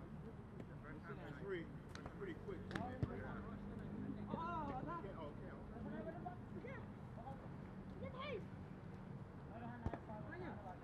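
Distant voices of several people calling and shouting across an open field, with a steady low hum underneath. A sharp knock comes about three seconds in and another near the end.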